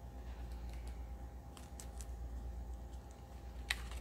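Paper pages of a tag pad being handled and flipped open, giving soft rustles and small light clicks, the sharpest near the end, over a steady low hum.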